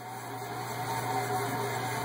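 Homemade fan-fed waste oil burner running: its small burner fan and oil flame make a steady noisy drone with a low, even hum underneath.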